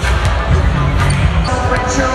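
Basketballs bouncing on a hardwood court, with a few sharp bounces, over arena music and a public-address announcer's voice.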